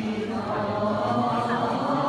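Many voices chanting a Buddhist mantra together in a steady, sung chant.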